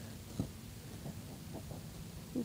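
Quiet background with a steady low hum and a single light click about half a second in.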